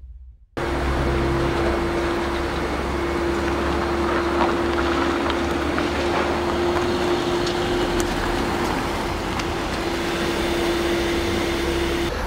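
Steady outdoor vehicle noise: a low rumble and hiss with one constant mid-pitched hum held unchanged throughout, starting about half a second in after a moment of silence.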